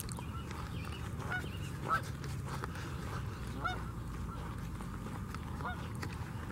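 Geese honking: several short, separate honks a second or two apart, over a steady low rumble.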